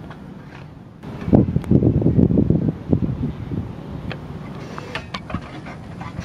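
Wind buffeting the camera microphone: an irregular low rumble, loudest for about two seconds starting a second in, then easing, with a few light clicks later on.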